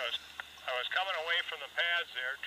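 A man's voice talking through a handheld two-way radio (walkie-talkie), thin and tinny with the highs cut off, as it comes from the radio's small speaker.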